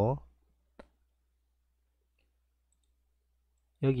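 A single short click from a computer mouse, about a second in, between stretches of near silence.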